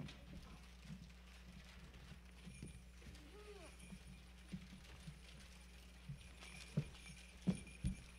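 Children's footsteps and shuffling knocks on a stage platform, scattered through, with a few louder thumps near the end, over a steady low hum.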